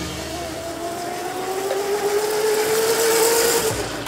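Electric motor of a modified Power Wheels ride-on toy race car whining as the car speeds up, its pitch rising slowly and steadily, over a hiss; it cuts off suddenly near the end.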